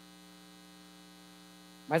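Faint, steady electrical mains hum with no other sound, until a man's voice starts just before the end.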